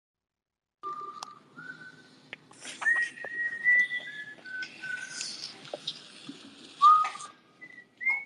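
Whistling: a short run of held notes stepping up and down in pitch, over rustling noise and a few sharp clicks.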